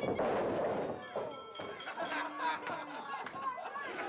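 A heavy body slam onto a wrestling ring mat right at the start, which sets off a burst of noise. After it come a few sharp knocks and shouting voices from the small crowd.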